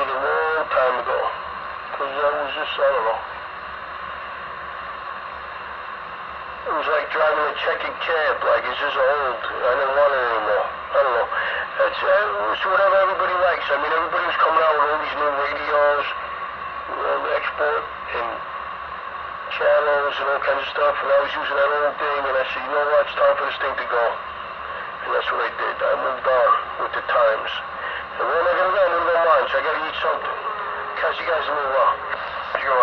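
Speech coming over a CB radio: voices talking in narrow, band-limited sound over a steady radio hiss, with a pause of only hiss a few seconds in.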